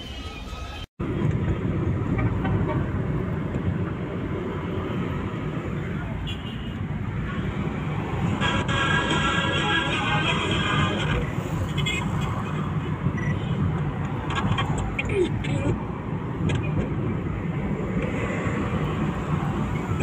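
Car driving through city streets, heard from inside the car: a steady low rumble of engine and road noise that starts abruptly about a second in, after a brief dropout.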